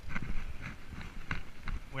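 Mountain bike rolling over a sandy dirt trail: scattered clicks and knocks from the bike rattling over the ground, over a low rumble of wind on the microphone.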